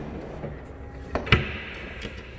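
The flip-up rear liftglass of a GMC Yukon Denali being worked by its handle: two sharp latch clicks about a second in, the second louder, like a knock.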